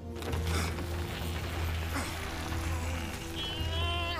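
Dramatic cartoon score music over sound effects of trees crashing down: a sudden crash right at the start, rumbling noise after it, and a tone sliding down in pitch near the end.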